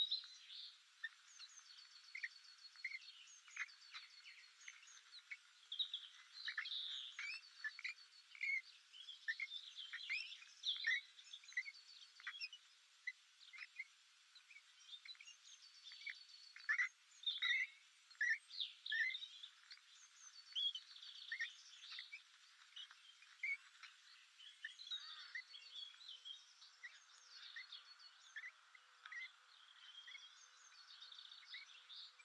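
Small birds chirping and calling, a steady stream of short chirps and whistles with a high, rapidly repeated trill coming back every few seconds.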